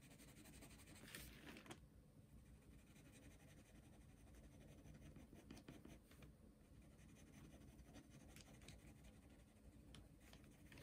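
Faint scratching of a watercolour pencil shading on paper, in soft strokes that come and go, louder about a second in and again around halfway.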